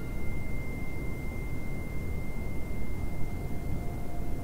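Steady high pure tone held throughout, with a second, lower pure tone coming in about three seconds in, over a steady low background hum: sustained sine tones of an ambient meditation soundtrack.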